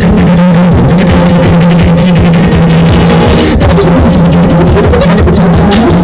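Live beatboxing with acoustic guitar through a PA, loud: a steady low hum held under rapid vocal drum beats and clicks. Near the end a voice sweeps upward in pitch.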